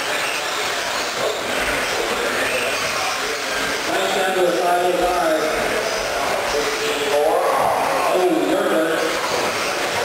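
Indistinct talking, echoing in a large hall, over the steady noise of electric 1/10-scale stadium trucks racing on a dirt track. The talking comes in two stretches, near the middle and a little before the end.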